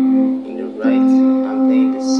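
Electronic keyboard playing held chords, with a new chord struck about a second in.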